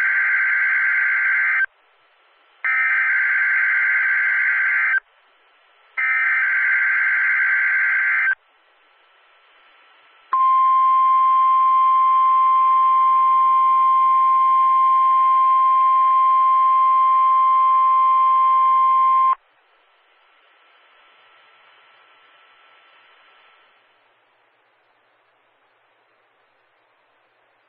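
NOAA Weather Radio Emergency Alert System activation for a Winter Storm Warning: three digital SAME header data bursts, each about two seconds long and a second apart, then the steady single-pitch warning alarm tone for about nine seconds, which cuts off suddenly. No spoken warning follows, only faint hiss: the alert failed.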